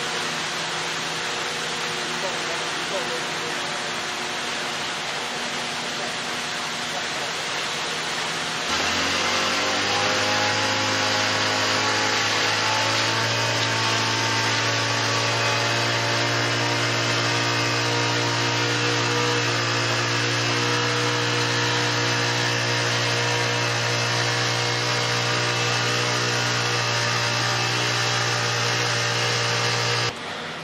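Engines running steadily on a concrete pour: the small motor of a vibrating power screed and the concrete pump. About nine seconds in, the sound turns suddenly louder, with a strong low steady hum underneath.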